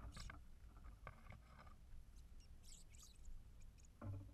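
Faint, scattered taps and rustles of sparrows feeding on a plastic hopper feeder's seed tray, with a few brief high-pitched sounds near the middle and a steady low rumble underneath.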